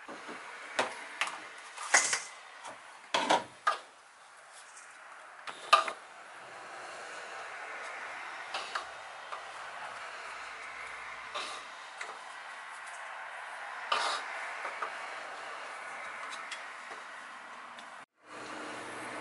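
Small plastic measuring cups and spice containers clicking and knocking against a countertop and a stainless steel mixing bowl as spices are tipped in. A burst of sharp knocks comes in the first six seconds, then a few lighter taps over a steady faint hiss.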